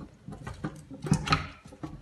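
Soft-serve machine dispensing-valve parts being handled in a stainless steel sink as the pistons are pulled out of the valve block: a few light knocks and rubbing sounds.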